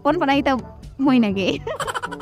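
People talking in a conversation, the voice wavering in pitch, over background music.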